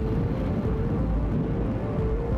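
Closing theme music: a deep, low rumbling bed with held synth notes that change in steps.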